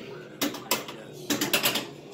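Star Wars pinball machine's mechanisms clacking: two single sharp clacks in the first second, then a quick run of four or five in the second half.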